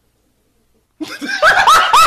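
About a second of dead silence, then a loud, high-pitched burst of human laughter that breaks in suddenly, with rising whoops about three a second.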